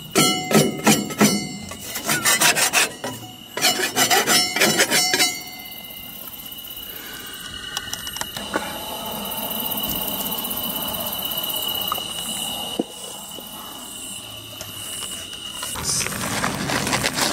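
Quick, repeated scraping strokes for about five seconds: the papery remains of a hornet nest being scraped off the underside of a steel outdoor staircase. It then goes quieter, with a steady high-pitched tone until just before the end.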